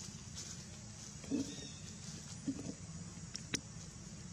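Two short, low calls from a macaque, just over a second apart, over a steady low rumble, with one sharp click near the end.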